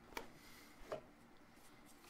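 Two short, light knocks about a second apart as miter sled parts and cardboard packing are handled on a bench, over faint room tone.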